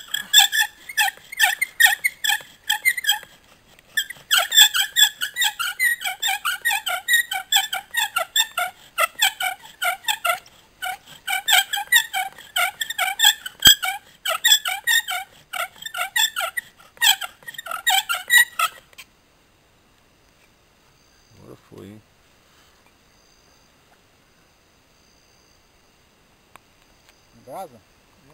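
Wooden bow-drill spindle squealing in its socket and fireboard as the bow is sawed back and forth, a rapid run of high, pitched squeaks with a brief pause about four seconds in, stopping abruptly about two-thirds of the way through.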